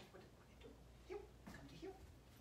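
Faint ticking clicks, three in the second half, of a dog's claws on a tile floor as it gets up, over near silence.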